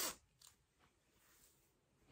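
A zipper on a fabric hoodie unzipping in one short burst right at the start, followed by faint rustling of clothing.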